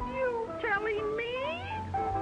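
A cartoon character's wordless whining cry over the orchestral score. Its pitch dips and rises, wavers quickly, then sweeps upward before stopping near the end.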